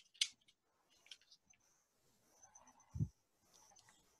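A light square sheet of paper being folded corner to corner and creased: a brief rustle of paper just after the start, a faint crinkle about a second in, and a soft thump about three seconds in as the fold is pressed flat against the table.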